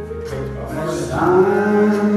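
Live church band music with a man's voice holding a long sung note through a microphone and PA, swelling in about halfway through.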